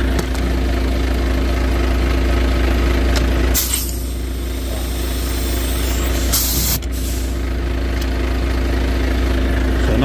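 Truck engine idling steadily while the air line quick coupling between tractor and trailer is uncoupled. Compressed air hisses out in two short bursts, about three and a half seconds in and again about six and a half seconds in; the second lasts about half a second and cuts off suddenly.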